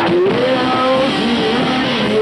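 Live rock band playing: electric guitar and bass guitar with drums, a note sliding upward at the start.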